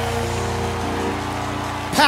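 Live gospel band music between vocal phrases: held chords over a steady low bass note, with an even hiss behind them. The chord shifts slightly about a second in.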